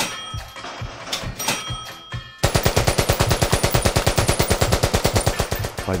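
A few scattered gunshots, then about two and a half seconds in an AK-pattern assault rifle fires a long fully automatic burst at about ten rounds a second.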